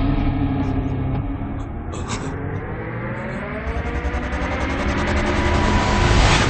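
Dramatic film background score: a low rumbling drone with a rising tone that swells through the middle and settles into a held note, with a brief hit about two seconds in.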